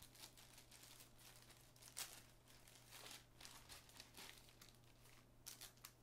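Faint crinkling and rustling of a clear plastic accessory bag being opened and handled, in scattered short rustles with a slightly louder one about two seconds in.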